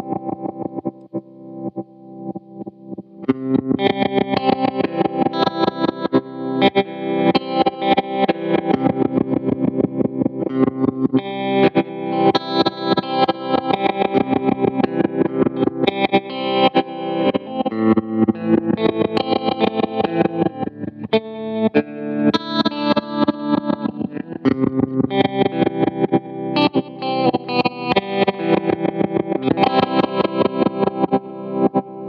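Electric guitar played through a Lightfoot Labs Goatkeeper GK3 tremolo/sequencer pedal, its volume chopped into rapid, even rhythmic pulses. It is softer for about the first three seconds, then comes in louder and fuller.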